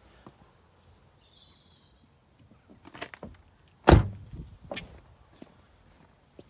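Car door of a Mercedes SLK shut with one solid thud about four seconds in, after a few lighter clicks and knocks as the door is handled.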